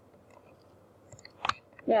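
Quiet room tone with a few faint clicks after about a second, the sharpest one about a second and a half in, then a woman's voice starts right at the end.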